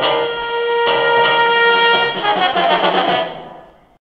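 Music: sustained held chords that fade out over the last second or so.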